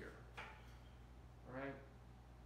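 Quiet room with a steady low hum, a faint click about half a second in, then a short murmured vocal sound from a man near the end.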